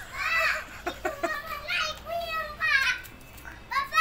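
A child's high-pitched voice calling out in four short phrases.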